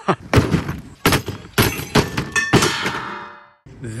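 A quick series of thuds, knocks and clangs. The last one rings out for about a second before the sound cuts off abruptly.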